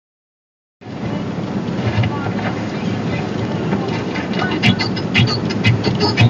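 Cabin noise of a car cruising at highway speed: a steady rumble and hiss of tyres, wind and engine, heard from inside the car. It starts about a second in, and a few sharp clicks come near the end.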